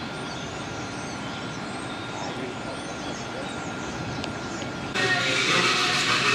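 Steady outdoor background noise with a faint, steady high whine. About five seconds in it gives way to a louder, busier indoor background.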